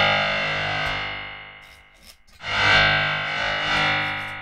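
Empress Zoia digital modular synthesizer playing its physical-modelled bowed-string patch, filtered noise through a resonator: two sustained notes at the same pitch. The first fades out over about two seconds; the second swells in about two and a half seconds in, holds, then fades near the end.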